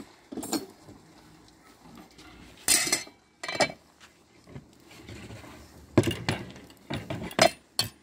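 Metal cookware being handled: an aluminium pot, its lid, a metal spoon and a wire grill basket clanking and clinking against each other and the wooden table. It comes as a string of separate sharp knocks, with one long loud clatter about three seconds in and several more knocks in the second half.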